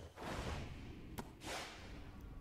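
Anime sound effects: a whooshing rush with a sharp crack a little past a second in.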